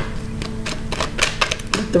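A deck of tarot cards being shuffled by hand: a quick, irregular run of card clicks and snaps.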